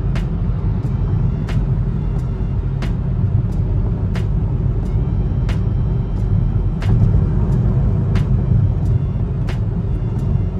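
Steady low road and engine rumble heard inside a car cabin while driving at freeway speed, with faint sharp ticks about once a second over it.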